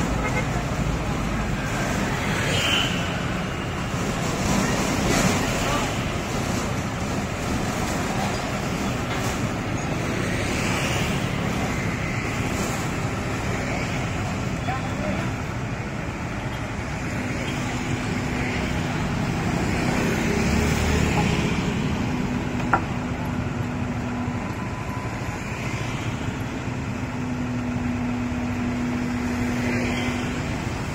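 Steady road traffic and vehicle engine noise with indistinct voices. A low steady hum comes in twice in the second half, and there is a single sharp click about two-thirds of the way through.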